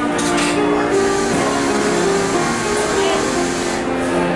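Piano music with held notes changing about every half second, over a murmur of background voices.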